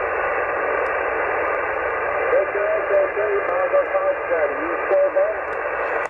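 Receiver noise from a Yaesu HF transceiver's speaker on 20 metres, a steady hiss clipped to a narrow voice band. A weak distant station's voice is faintly heard through the static in the second half, fading in and out in poor band conditions.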